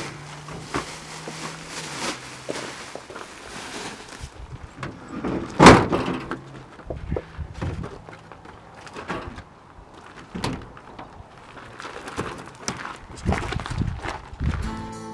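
Boxes and cases of soda being handled and set down in the back of a pickup truck: scattered knocks and rustling, with one loud slam about five and a half seconds in.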